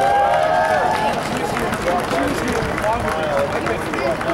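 Voices at an outdoor rally: indistinct speech over a public-address system and from the crowd, over steady outdoor background noise.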